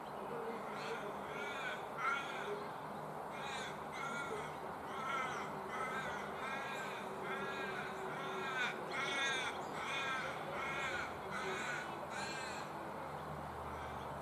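A crow-like bird cawing over and over, a run of short, harsh calls at a bit more than one a second that starts about a second in and stops shortly before the end, over a faint steady background hum.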